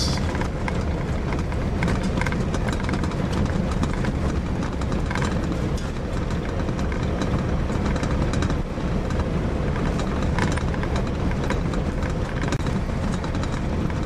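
Steady rumble of a vehicle driving over a rough, potholed gravel road, heard from inside the vehicle, with a few brief rattles from the bumpy surface.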